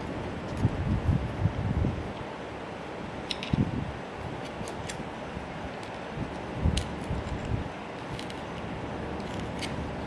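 Small handling noises as a metal pick pushes oil-wick packing into the sleeve-bearing housing of a motor's cast end bell: a few soft knocks and faint clicks of the tool against the housing, over steady room noise.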